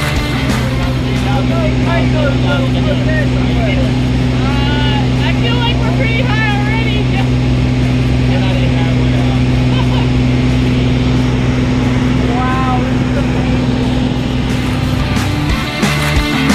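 Small skydiving plane's engine and propeller running steadily, heard from inside the cabin, with voices faintly through it.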